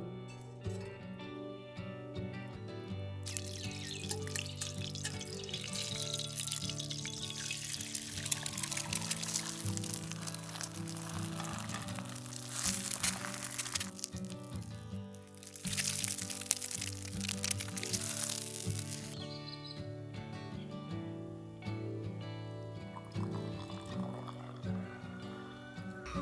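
Background music, with eggs sizzling in a frying pan over a campfire as a steady hiss from about three seconds in until about two-thirds of the way through, loudest in two stretches near the middle.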